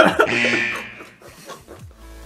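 A burst of breathy laughter right at the start that trails off within about a second, over quiet background music.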